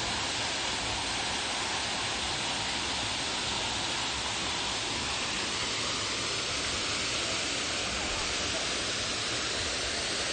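Small waterfall pouring over a rock ledge into a pool: a steady, even rush of falling water.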